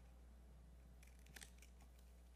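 Near silence over a steady low hum, with a few faint clicks and rustles a little past a second in, from papers being handled on a lectern.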